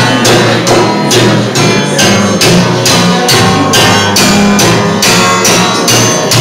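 Live band playing an instrumental break between verses of an old-time song, with a steady beat of about two and a half strokes a second under sustained notes and a moving bass line.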